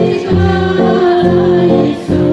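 Church congregation singing a hymn together, held notes moving from one to the next, with a woman's voice prominent.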